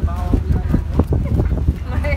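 Low, steady rumble of a boat under way, with people's voices talking in the background and scattered light knocks.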